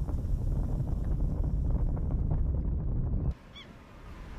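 A dense, low rumble of outdoor noise cuts off abruptly a little over three seconds in. Just after it comes a single short, high bird call.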